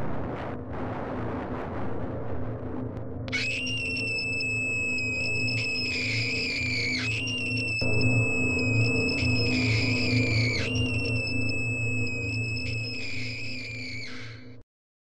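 Eerie film soundtrack: a steady low drone, joined about three seconds in by a high, piercing, scream-like electronic tone. The tone is held in three long stretches of about three and a half seconds each, sagging slightly in pitch through each one. In the story's terms it stands for a tree's scream heard through the sound machine.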